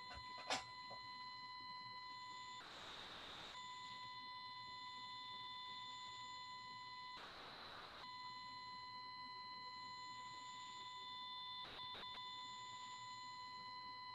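Faint, steady high-pitched electrical whine on a call's microphone line, a tone near 1 kHz with overtones above it: audio interference that the presenter is trying to cure by switching microphones. Two short bursts of hiss come through about three and seven seconds in.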